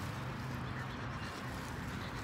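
Steady low outdoor background hum and hiss, with no distinct events.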